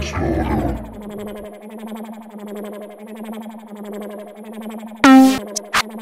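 Intro of an electronic trap instrumental: a synthesizer pad pulsing rapidly over a held low note. It opens with a loud hit whose deep low end fades over the first second and a half. Near the end a loud pitched synth stab and two short clicks come in.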